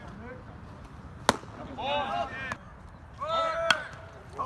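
A baseball bat strikes a pitched ball about a second in with a single sharp crack. Shouting voices follow, and there is another sharp knock near the end.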